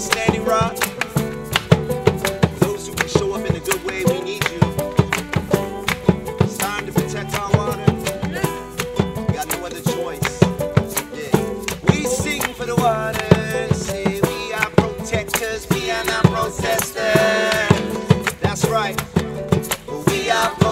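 Acoustic folk band playing an instrumental passage: strummed acoustic guitars, banjo and fiddle over a steady djembe beat, with a rattling hand shaker keeping time.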